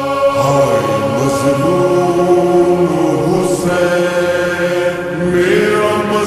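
Urdu noha, a Shia lament, in a slowed-and-reverb edit: long chanted vocal notes that glide down in pitch about half a second in, then hold. The voice is heavily reverberant.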